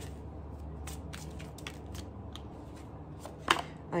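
Tarot cards being handled and shuffled in the hands, making a string of soft, irregular card clicks with one sharper snap about three and a half seconds in.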